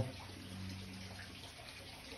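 Faint, steady sound of running water over a low steady hum.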